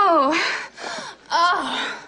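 A woman's voice moaning twice with wavering pitch, with breathy gasps between the moans: a faked orgasm.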